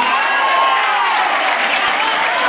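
Audience applauding and cheering at the end of a song, with scattered shouts among the clapping.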